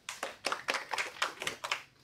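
A small group of people clapping briefly in a round of applause that dies away just before the end.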